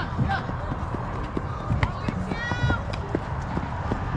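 Players' voices calling out across a softball field, with no words made out, and one loud, high-pitched yell about two and a half seconds in; short sharp knocks scattered through.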